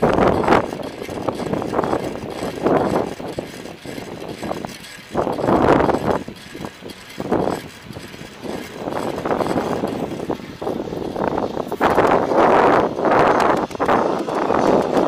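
Outdoor street noise heard through the built-in microphone of a moving Yi 4K Action Camera: uneven rushing noise that swells and fades every second or so, with the loudest stretch near the end.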